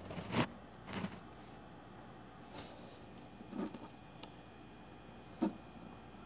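Faint handling noise: a few short rubs and bumps as the camera and the cracked iPod are moved about, scattered over quiet room tone.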